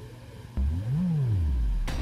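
Electronic swoop from the music video's closing logo: a low synth tone cuts in about half a second in, rises in pitch, then slides back down and holds a deep low note. A sharp click comes just before the end.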